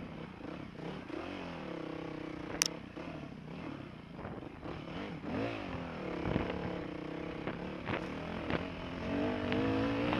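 Off-road motorbike engine running at low to moderate revs, its pitch rising and falling with the throttle, louder near the end. It rides a bumpy track, so knocks and rattles come through, with one sharp click a couple of seconds in.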